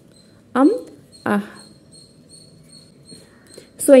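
Two short voiced sounds against a faint steady high whine: a brief rising call about half a second in, then a shorter one a moment later.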